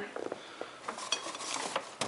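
Empty glass beer bottles clinking and rattling against each other in a paper bag as one is lifted out, a scatter of light clicks and small glassy ticks, busiest in the second half.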